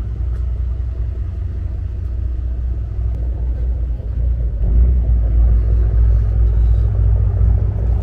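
A loud, steady low rumble that grows louder about halfway through.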